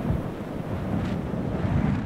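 Strong wind gusting in a blizzard, rising and falling, with wind buffeting the microphone.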